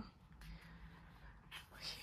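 Near silence: room tone, with a faint breath near the end.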